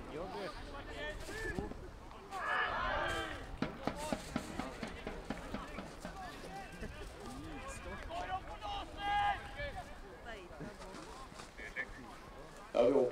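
Footballers' shouts and calls carrying across an outdoor pitch, in two louder bursts, one about a quarter of the way through and one about three quarters through, with a few short knocks in between.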